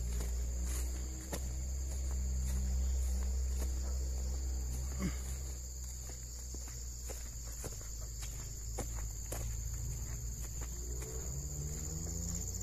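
Footsteps on a dirt and grass track, irregular crunches and taps, over a steady high-pitched insect chorus of cicadas or crickets, with a low rumble underneath.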